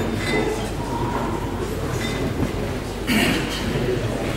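Steady, noisy sports-hall background with faint murmuring voices of the seated spectators, and a brief louder sound about three seconds in.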